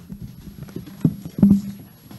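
A few dull knocks and bumps on a meeting table, with two louder thumps about a second and a second and a half in.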